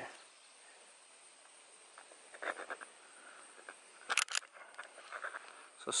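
Quiet outdoor background with a few faint chirps, and two short sharp clicks just after four seconds in.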